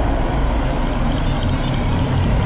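A deep, loud vehicle-like rumble played over a presentation sound system, within dramatic reveal music; steady high tones come in about half a second in.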